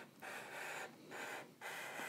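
Faint scratchy hiss of a felt-tip marker drawn across paper, in three short strokes with brief pauses between them.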